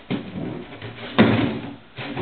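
A plastic milk jug being pushed and batted along the floor by a puppy, knocking against the wall, with one sharp, loud knock a little over a second in.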